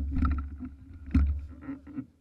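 Wind buffeting and handling noise on the camera's microphone: a low rumble with two sharp knocks, one shortly after the start and one just past a second in.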